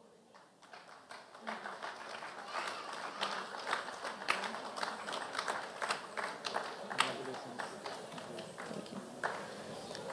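Light, scattered audience applause: many separate hand claps, starting about a second in and thinning out near the end.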